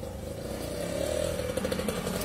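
A small engine running steadily, a droning hum over a low rumble, its pitch wavering slightly near the end.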